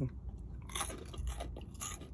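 Someone biting and chewing the crispy fried skin of a fried chicken leg close to the microphone, with several sharp crunches.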